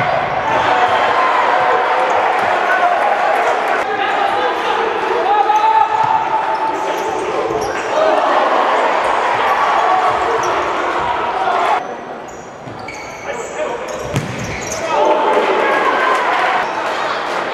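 Live futsal play on a wooden indoor court: the ball being kicked and players' footwork, with shouting voices from players and spectators, reverberating in a large sports hall. The sound dips for a couple of seconds about three-quarters of the way through, then picks up again.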